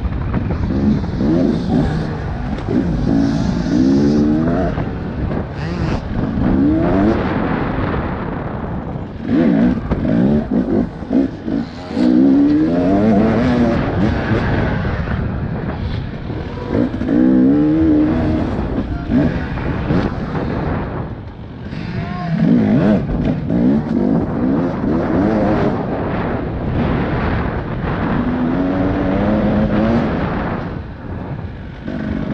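Enduro motorcycle engine heard close up from the bike, revving hard again and again: each burst of throttle rises in pitch for a second or two, then drops off as the throttle is chopped or the next gear goes in, over a steady rush of wind and tyre noise.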